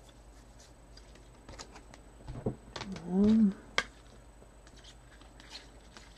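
Trading cards being handled and flipped through by hand, making scattered light clicks and rustles. About three seconds in comes a short hum from a man's voice that rises and falls in pitch, the loudest sound in the stretch.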